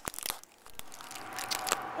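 Aluminium foil crinkling close to the microphone: a burst of crackles in the first half second, then only faint background.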